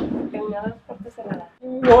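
Faint talking voices, with a brief hush about three quarters of the way through, then a loud exclamation starting just before the end.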